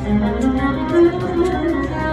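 Garmon playing a melody of held notes without singing: an instrumental passage of an Azerbaijani song.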